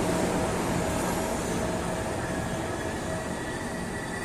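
Regional train hauled by an E.464 electric locomotive rolling past along the platform: a steady rumble of the coaches' wheels on the rails that slowly fades as the locomotive moves on. A thin, high, steady squeal comes in about halfway through.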